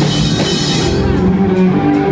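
A live rock band playing loudly, with electric guitar and drum kit. The bright high end thins out about halfway through.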